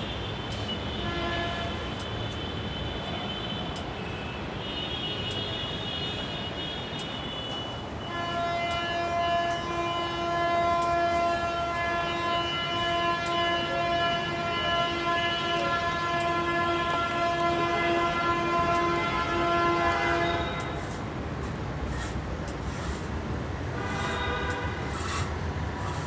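A long, steady horn blast held for about twelve seconds, starting about a third of the way in and cutting off suddenly, over the rumble of idling traffic; shorter, higher horn tones sound near the start and near the end.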